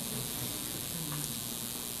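Steady hiss of a hall's room tone picked up by a microphone, with a faint low murmur under it.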